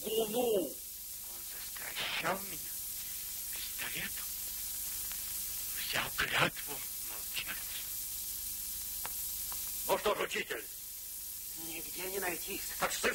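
Steady hiss of an old optical film soundtrack, with a few brief snatches of speech breaking through: one at the start, others about two, six and ten seconds in.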